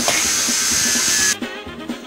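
Lego Mindstorms robot arm's motors whirring in a steady, hissy drone, cut off abruptly about a second and a half in. Music takes over after the cut.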